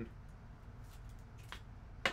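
Faint handling of a clear plastic trading-card top loader, with a light click about one and a half seconds in, over low room hum.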